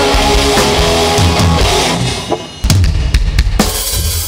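Live rock band playing with electric guitars, bass and drum kit. About two seconds in the playing drops away, and a quick run of loud drum and cymbal hits follows, ending the song with a ringing decay.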